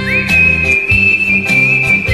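A person whistling the melody of a Hindi film song over an instrumental backing track. The whistle scoops up into one long high note and holds it, over chords and bass with a steady beat.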